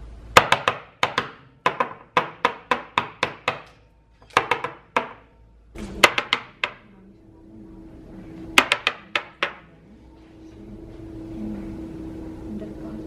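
Rapid sharp taps with a short ringing decay, a small hair-filled cup being knocked against a workbench to settle and even up makeup-brush hair: about a dozen at three to four a second, then shorter groups of a few taps.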